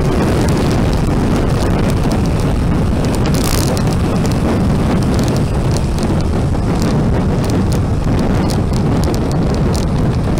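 Steady wind buffeting the microphone of a moving motorbike, over the low running noise of the bike and its tyres on the road.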